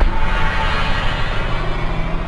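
Electronic intro music ending: the drumbeat stops and a final sustained hit rings on, slowly fading away.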